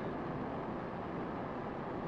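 Steady, even background rush of an open ferry deck under way, with no distinct events.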